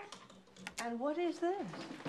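A short spoken utterance lasting under a second, preceded by a sharp click about three-quarters of a second in.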